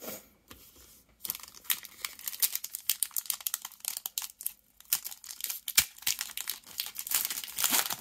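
Foil Pokémon booster pack wrapper being crinkled and torn open by hand: a dense run of crackles, with one sharp snap about two-thirds of the way through.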